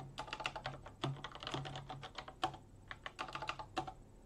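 Typing on a computer keyboard: a quick run of keystrokes entering a terminal command, stopping just before the end.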